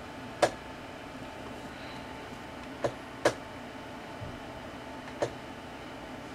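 Four isolated sharp clicks, two of them close together near the middle, over a steady low hum of bench equipment. The clicks fit oscilloscope switches or knobs being turned or set.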